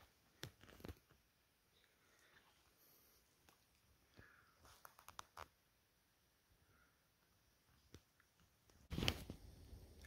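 Near silence broken by faint footsteps crunching on forest-floor leaf litter and twigs. The steps come a few at a time, with a quick cluster about halfway, then a louder rustle near the end.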